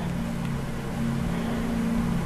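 A steady low hum made of a few held low pitches over a faint hiss, with no speech.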